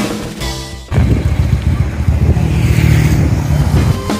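Background music for about a second, then it gives way to about three seconds of the low, dense rumble of Harley-Davidson V-twin motorcycle engines running.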